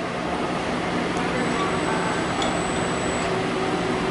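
Industrial robot arm's servo motors whirring steadily as the arm travels upward to its home position, over a steady background hum.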